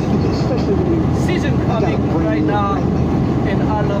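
Steady road and engine rumble inside a moving car at highway speed, with a voice speaking in short snatches over it.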